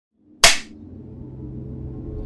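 A film clapperboard snapped shut once, a sharp clack about half a second in. Soft music follows, swelling gradually.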